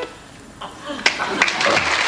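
A studio audience breaks into applause after a brief lull. A single sharp clap comes about a second in, then steady clapping builds, with a few voices among it.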